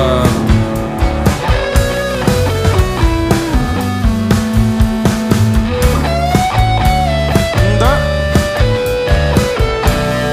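Live rock band playing an instrumental passage: electric guitar lines with sliding notes over a steady drum beat and bass.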